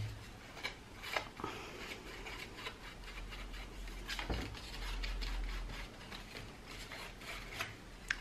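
Faint scrubbing and dabbing of a small ink blending brush against the edges of a cardstock bookmark, with a few light taps and handling clicks. The sharpest tap comes a little past four seconds in.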